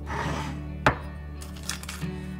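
A small ceramic drawer slides out of a wooden spice rack, with a short rustle, then a sharp knock about a second in and a lighter clack near the end, over background music.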